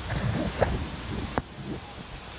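Brief handling sounds and a sharp metallic click about one and a half seconds in as metal grill tongs are taken up over the grate, over a steady background hiss.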